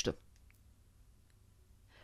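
Near silence between spoken phrases, with a few faint clicks.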